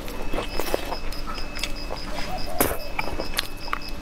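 Close-miked chewing of stir-fried rice noodles and green chili: a run of wet mouth clicks and smacks.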